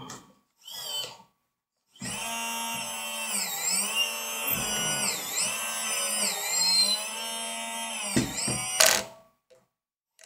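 Electric motor whine of a 1:14 Liebherr LR 634 RC tracked loader working its lift arm and bucket. Two short blips are followed, about two seconds in, by a steady whine whose pitch dips and recovers several times as the bucket is raised and tipped. It cuts off with a sharp burst near the end.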